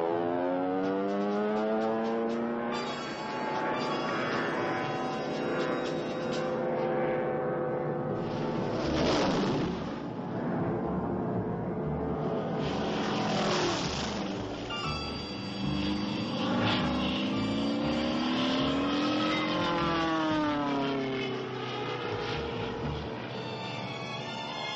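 Cartoon sound effect of a World War II propeller fighter plane's engine. Its pitch climbs and falls as it dives and pulls up, with loud rushing sweeps about nine and thirteen seconds in, over music.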